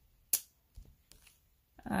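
A fingertip tapping the phone's touchscreen: one sharp tap about a third of a second in, then a couple of much fainter taps.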